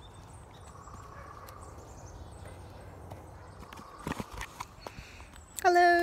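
Footfalls of a person skipping on a dirt trail, a hoof-like clip-clop rhythm over a steady outdoor background, with a few sharper knocks about four seconds in. A voice starts just before the end.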